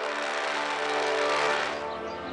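Dramatic TV background score: a sustained chord held under a noisy swell that builds and then falls away suddenly just before the end.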